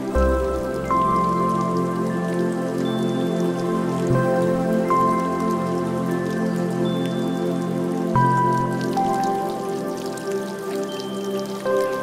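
Slow, calm background music of sustained chords, the bass note changing about every four seconds, with a faint patter like dripping water behind it.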